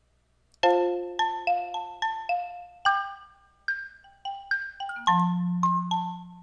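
Numa Player's sampled marimba sound playing an EZ Keys 2 MIDI phrase: a run of struck mallet notes begins about half a second in, and deeper, longer-ringing low notes join near the end.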